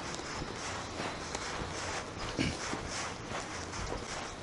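Footsteps on cobblestones at a steady walking pace, with one louder step about two and a half seconds in.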